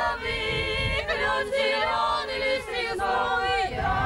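Small group of voices singing a folk song unaccompanied, several singers holding long notes together with slides between them.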